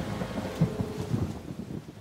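Thunder rumbling with rain, loudest just over half a second in and dying away toward the end.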